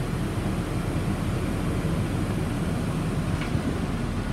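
Steady rush of the bus's air-conditioning blowers running on high, with the low hum of the idling 6.7-litre diesel engine underneath, heard inside the passenger cabin.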